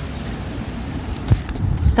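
Low outdoor rumble and hiss on a handheld camera microphone carried on a walk, with a couple of soft thumps of handling or footsteps about halfway through and near the end.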